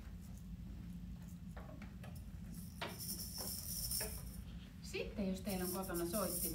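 Metal jingles of a small hand-percussion instrument shaken, starting about three seconds in, after a few light clicks.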